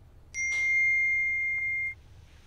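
A single steady electronic beep, high-pitched, lasting about a second and a half and cutting off abruptly.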